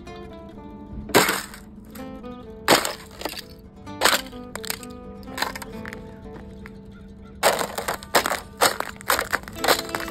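A canvas sneaker stepping on and breaking the thin ice over a frozen puddle on gravel: sharp cracks and crunches, spaced a second or so apart at first, then a quick run of them in the last few seconds. Background music with sustained notes plays under it.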